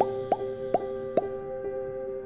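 Closing jingle: a held, soft synthesized chord under four quick rising pop sound effects in the first second or so, the pops coming a little under half a second apart as logo-card icons pop into view.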